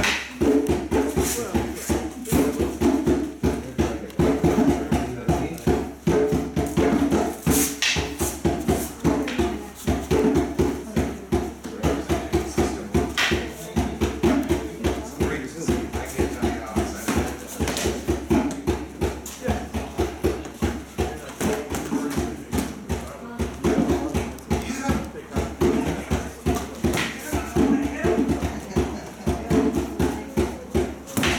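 Live hand percussion playing a fast, steady drum rhythm throughout. A few sharper clacks stand out over the beat, from the wooden sparring sticks striking.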